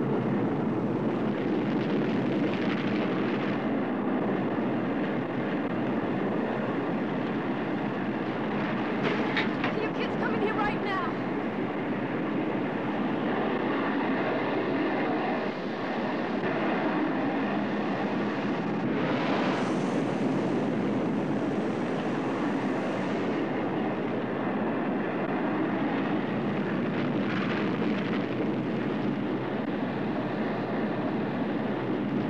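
Ballistic missiles launching from their silos: a continuous rushing rocket-exhaust rumble, with a brighter hiss joining for a few seconds about two-thirds of the way in.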